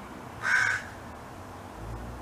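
A crow gives a single short, loud caw about half a second in.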